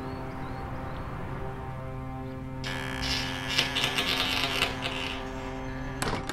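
Film-score drone of steady sustained tones. A little under halfway in, a high hissing, crackling texture swells in over it for about two and a half seconds, then fades.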